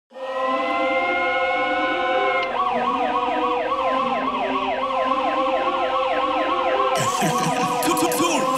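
Intro of an electronic dancehall remix: a held synth chord, then from about two and a half seconds a siren-like synth wailing up and down several times a second over sustained tones, with a hiss joining near the end.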